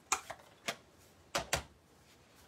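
About five sharp taps and clicks of a folded cardstock card being picked up and handled against a gridded work mat. The loudest comes right at the start, then a close pair about a second and a half in.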